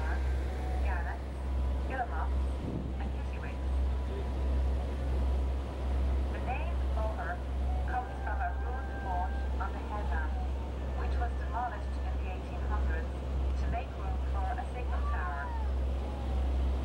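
Tour boat's engine running with a steady low drone, with scattered voices over it.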